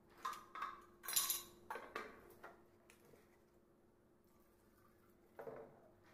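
Light clinks and knocks of paint tins and a plastic mixing jar being handled, with a stirring stick tapping against the container. Several come in the first two and a half seconds, then one more near the end.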